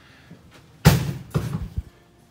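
A door swung shut with one sharp knock about a second in, followed by a few lighter knocks and rattles.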